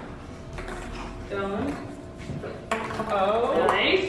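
A ball running down a wall-mounted tube track, making a few short clicks and knocks, with voices over it near the middle and toward the end.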